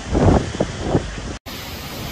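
Hurricane-force wind buffeting the microphone in loud, irregular gusts. After a brief audio dropout about a second and a half in, a quieter, steady rush of wind follows.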